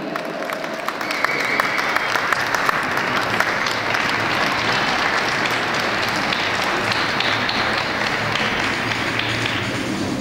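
Audience applauding in an ice rink arena at the end of a skating program, building about a second in and then holding steady.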